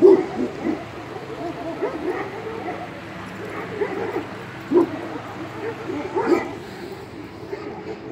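Turkish shepherd dogs whining and yipping: a string of short, arching cries, the loudest at the start and about five and six seconds in.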